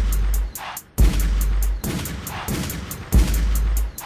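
Crunk-style rap instrumental beat: long, deep bass notes under fast hi-hat ticks, with no melody line. The beat cuts out briefly about half a second in and again near the end.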